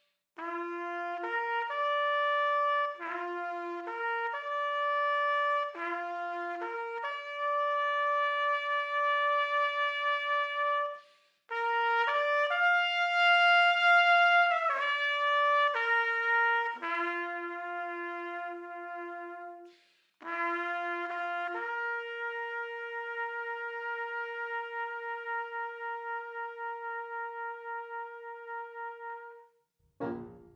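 Solo trumpet playing a slow bugle-call-style melody that moves up and down over a few notes in phrases with short breaks. It ends on one long held note with a slight waver.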